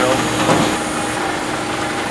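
Steady hum of a large-format digital printing press, with a knock and handling noise about half a second in as a roll of print media is loaded into it.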